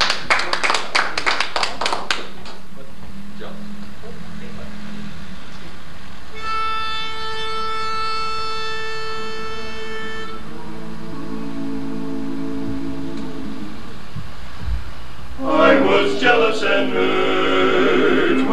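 Brief clapping, then a pitch pipe sounds one steady note for about four seconds. The quartet hums their starting notes together off it, and near the end they break into four-part a cappella barbershop harmony.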